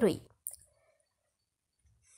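A person's voice trails off at the very start, then a pause of near silence with a faint click about half a second in.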